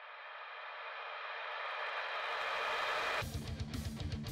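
Television static hiss growing steadily louder, then cut off abruptly a little after three seconds in by electric-guitar rock music with a steady beat.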